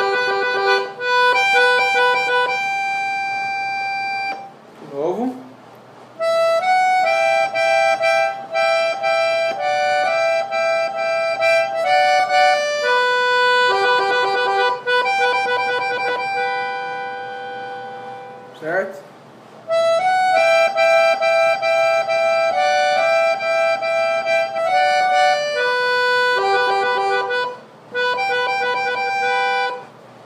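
Piano accordion on the musette register playing a right-hand melody in two voices moving together, in phrases with short breaks about five, nineteen and twenty-eight seconds in.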